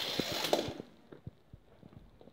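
Rustling, scraping noise that fades out within the first second, then a few light clicks and taps of plastic toy track and a small die-cast toy car being handled.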